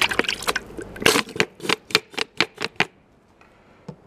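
Oil bottle glugging and clicking as cooking oil is poured into a deep fryer: a quick run of sharp pops, settling into about five a second, that stops about three seconds in.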